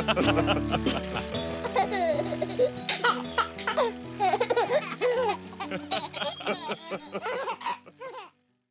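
Cartoon background music with children's giggling and laughter over it, fading toward the end.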